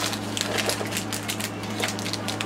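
Plastic fruit-snack packaging crinkling and rustling as it is handled, an irregular quick run of small clicks and crackles.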